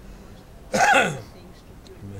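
One short, loud, harsh voiced sound, falling in pitch, about three-quarters of a second in, over quiet surroundings.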